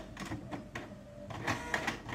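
Canon inkjet printer printing a page: uneven mechanical whirring and clicking, with several louder strokes in the second half.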